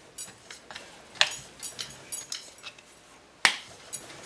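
Wooden rolling pin rolling out dough on a wooden board, making irregular light clicks and knocks. Two louder knocks come about a second in and shortly before the end.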